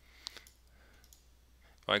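A computer mouse click, sharp, with a fainter click just after it, then faint room hiss.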